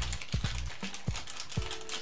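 Small clear plastic parts bag being handled and pulled open by hand, giving a series of sharp crinkling clicks and rustles, with background music underneath.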